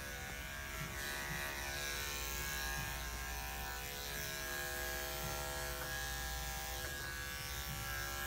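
Electric pet grooming clipper running steadily with an even hum while trimming a small dog's coat.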